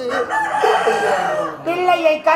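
A performer's voice giving a loud, raspy, drawn-out cry lasting about a second and a half, close to the stage microphone, before ordinary speech picks up again near the end.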